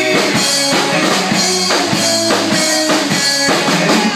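Live rock and roll band playing: overdriven electric guitars, electric bass and a drum kit keeping a steady beat.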